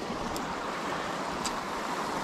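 Shallow creek water running steadily over gravel, an even rushing hiss, with two faint clicks, one about a third of a second in and one near the end.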